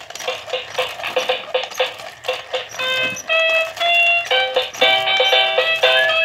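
A battery-powered dancing goose toy plays its electronic dance tune through a small tinny speaker. It starts with a fast, even clicking beat, and a bright beeping synth melody of short held notes comes in about three seconds in.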